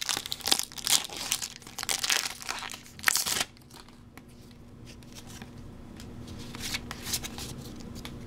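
Foil Pokémon booster-pack wrapper crinkling and tearing as it is ripped open by hand, with a louder burst about three seconds in. After that only faint rustling of the cards being handled.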